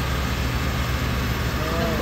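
Car engine idling steadily under the open hood, a low even hum; a voice starts near the end.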